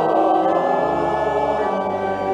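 A choir singing a slow, sustained sung "Amen", holding long chords, with organ accompaniment.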